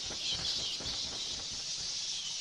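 Night-time animal ambience sound effect: a steady high chirring haze with soft, irregular patter underneath.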